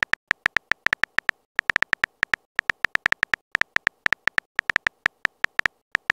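Keyboard-tap sound effect of a texting-story app: a quick run of short, high, identical ticks, one for each typed letter, several a second, with a brief pause about a second and a half in.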